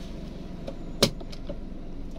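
A single sharp click about a second in, with a few fainter ticks around it, as the Toyota Agya's handbrake lever is taken hold of for release; a steady low hum of the car's cabin underneath.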